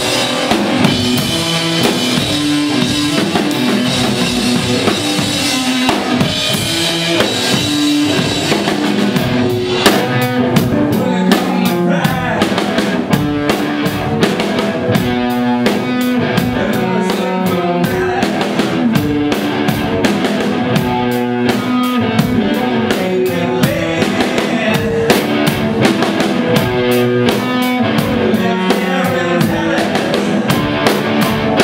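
Live blues-rock from an electric guitar and drum kit playing together loudly. About ten seconds in, the drum hits become sharper and more regular.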